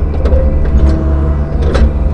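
Cat 305 E2 mini excavator's diesel engine running steadily, heard from inside the cab while the hydraulics work the bucket. A few sharp clicks and knocks come through, the loudest a little before two seconds in.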